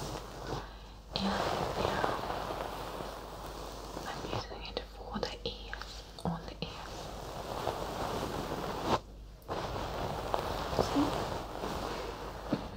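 A small plush owl toy brushed and rubbed over the ears of a binaural microphone: a continuous soft, close fabric rustle, briefly pausing about a second in and again near 9 s.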